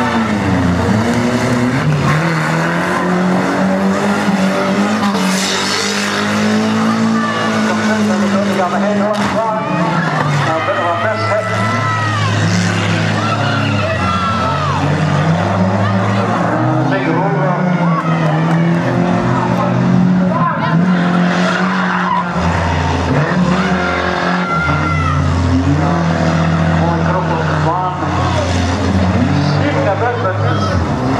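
Banger race cars' engines revving hard, their pitch rising and falling, with tyres skidding on the track.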